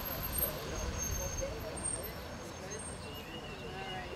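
Delivery box truck driving past, a low engine rumble that eases off in the second half, with faint murmuring voices.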